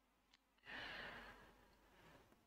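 A man's faint sigh, a breath out lasting about half a second, a little under a second in; otherwise near silence.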